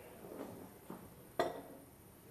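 A glass beer bottle set down on a café table: a couple of soft knocks, then one sharp clink with a brief glassy ring about one and a half seconds in.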